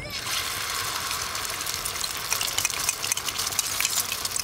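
Egg and chopped-chive batter sizzling in hot oil in a frying pan, a steady hiss with crackling pops that grow more frequent in the second half.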